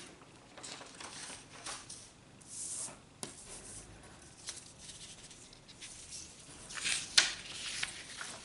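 Sheets of drawing paper rustling and sliding in irregular bursts as they are handled, with a sharp click about three seconds in and a louder one about seven seconds in.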